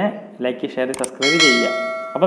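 Subscribe-button sound effect: a click, then about a second in a bright bell chime that rings out with many steady tones and fades within about a second, under a man's voice.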